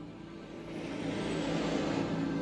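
Truck approaching and driving past close by, its engine and tyre noise growing steadily louder.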